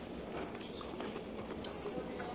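Low, steady room noise at a meal table, with a few faint light clicks of metal chopsticks against dishes near the end.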